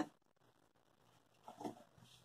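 Mostly near silence: room tone, broken by one faint, short sound about one and a half seconds in.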